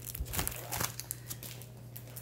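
Clear plastic wrapping on a scrapbook paper pack crinkling as the pack is handled and turned over. There is a quick run of crackles in the first second that thins out afterwards.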